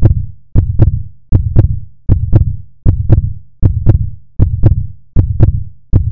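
Steady pulsing beat of paired deep thumps, like a heartbeat, about one pair every three-quarters of a second.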